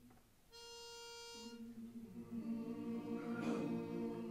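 A pitch pipe sounds one steady note for about a second. Then men's voices join in a held chord, humming or singing the starting pitch before the song begins.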